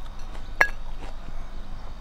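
Steady outdoor background noise with one short, sharp click about half a second in.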